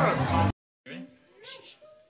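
A man's loud shouting voice over music, cut off abruptly about half a second in. After a brief silence comes a faint logo sting of short sounds with rising pitch glides, meow-like.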